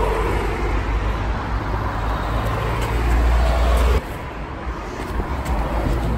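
Road traffic: cars driving past on a street, loud, with a deep rumble that builds for about four seconds. It then cuts off suddenly to quieter street noise.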